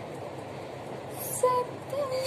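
Steady background noise from the recording room in a pause between phrases of unaccompanied female singing, with one short sung note about one and a half seconds in.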